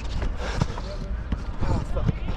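Dull thuds of football play on artificial turf — running footsteps and ball touches — under indistinct players' shouts across the pitch, with a steady low rumble of wind and movement on the head-mounted action camera.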